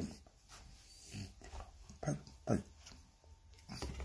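A man's voice making a few short wordless sounds, spaced out with quiet between them.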